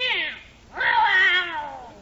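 A cat meowing twice: a short meow right at the start, then a longer one that falls in pitch, as a radio-play sound effect.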